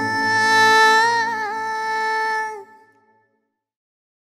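The final sustained note of a Telugu film song, one long held tone with a slight waver over a soft backing. It fades out between two and a half and three seconds in.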